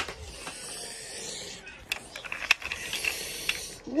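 Handling noise from plastic toys: a sharp click, a rustling hiss, then a few scattered clicks and more rustling.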